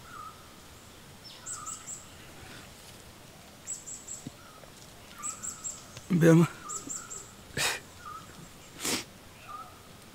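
Birds calling: quick high chirps and trills with short, repeated mid-pitched notes between them. Two short, sharp sounds come near the end.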